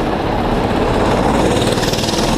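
Several small go-kart engines running hard as a pack of karts accelerates past at a green-flag start, the sound growing brighter near the end as karts come close.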